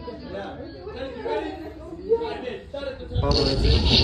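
Indistinct chatter of several voices talking over one another in a room. A little after three seconds in, a sudden loud rush of noise breaks in over the voices.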